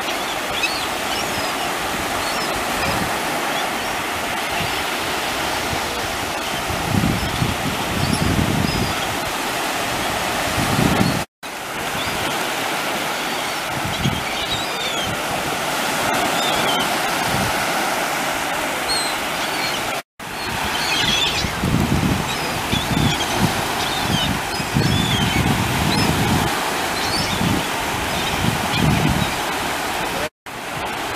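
Steady rush of breaking ocean surf, with short high calls of gulls scattered through it and bursts of low rumble, heaviest in the second half. The sound cuts out briefly twice, about 11 and 20 seconds in.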